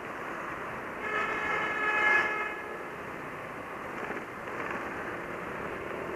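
A vehicle horn sounds once, a steady tone lasting about a second and a half, over the continuous wind and road noise of a moving scooter.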